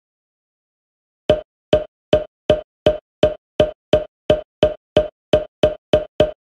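A sound effect of short, sharp knocks, like a wood block or a ticking clock. About fourteen of them come evenly spaced at nearly three a second, starting a little over a second in and getting slightly faster toward the end.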